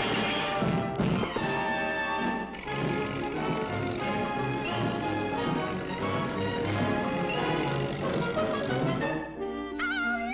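Orchestral cartoon score playing briskly, with a crash-like sound-effect hit near the start.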